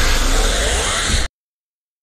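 Logo sound effect: a noisy whoosh with a deep rumble and a falling hiss, cutting off suddenly just over a second in.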